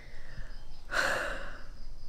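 A man's sigh: one breathy exhale about a second in, lasting about half a second.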